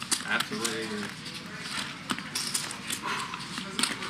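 Casino clay poker chips clicking as a player handles his stack, a run of short sharp clicks, over faint murmured talk at the table.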